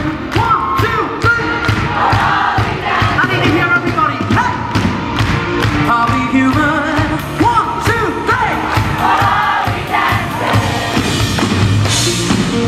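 Live pop band music: a steady drum beat under a male lead vocal singing held, wavering notes, with crowd noise from the audience.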